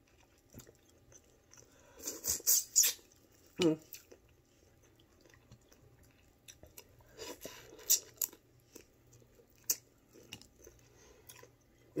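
A person eating boiled seafood close to the microphone: chewing and mouth noises with sharp clicks and crackles, in clusters about two seconds in and again near eight seconds. A short hummed 'hmm' about three and a half seconds in.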